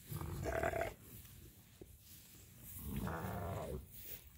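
North Country Cheviot yearling rams bleating: two calls, each just under a second long, one right at the start and one about three seconds in, the second with a wavering pitch.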